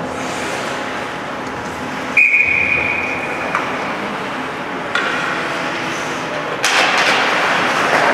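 Ice hockey rink sound: a single shrill whistle blast of just over a second, about two seconds in, over the steady noise of the arena. Near the end the noise of skates and sticks on the ice rises sharply as play resumes.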